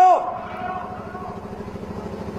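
A man's voice ends a word, then a low, steady buzzing hum with faint background noise from a recorded outdoor speech's microphone system.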